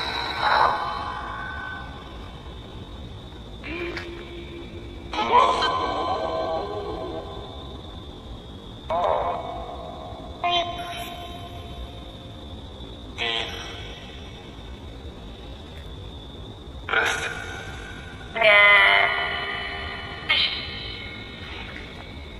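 Spirit box sweeping through radio stations: a steady hiss and high whine broken every second or few by short clipped fragments of broadcast voices and music. The investigator hears these fragments as words like "hurry up" and "it's him coming".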